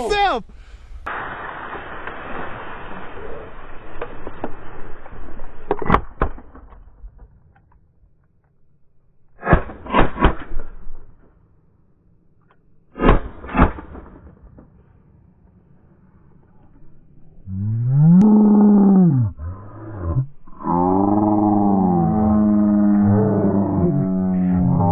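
Shotgun shots at sandhill cranes: a quick volley about ten seconds in, then two more shots about three seconds later. From about eighteen seconds on, loud rolling crane calls that glide up and down in pitch.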